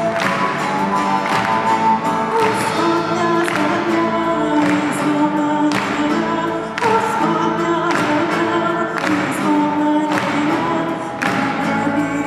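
Live band playing a Christian song, with several voices singing together over the instruments and a sharp beat about once a second.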